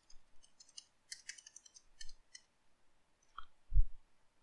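Light clicks from a computer keyboard and mouse: a quick run of small clicks in the first couple of seconds, one more near the end, then a short low thump.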